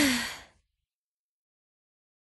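A short vocal sigh, a voice gliding down in pitch, fades out within the first half second, followed by silence.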